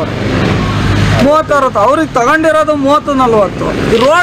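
A motor vehicle passes close by on the road during roughly the first second, with a steady engine and tyre noise that dies away. After that a man speaks.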